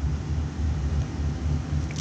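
Low steady background hum that wavers slightly in loudness.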